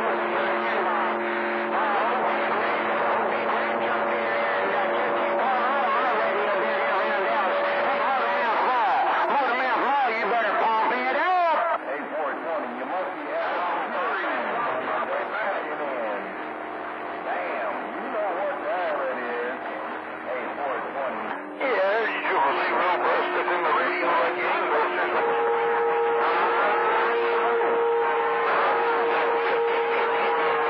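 CB radio receiving skip on channel 28: several stations overlap in garbled, warbling voices, with steady whistle tones riding over them. The signal breaks off sharply twice and is weaker between the breaks.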